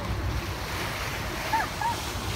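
Wind buffeting the microphone over sea noise aboard a boat, a steady low rumble. Near the end come two short arched calls, one right after the other.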